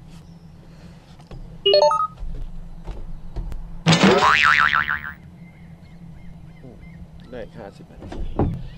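A quick run of short electronic beeping notes about two seconds in, then a loud wobbling cartoon-style 'boing' sound effect about four seconds in that lasts around a second.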